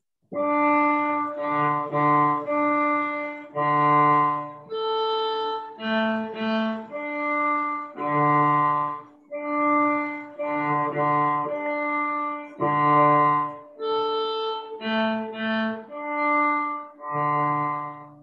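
A cello heard over a video call, playing a simple teaching tune in separate bowed notes, often two pitches sounding together, with short breaks between notes and phrases.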